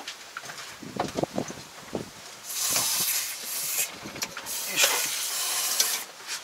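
A few light metallic clicks and knocks, then a loud hiss starting about two and a half seconds in, broken briefly twice, running until just before the end.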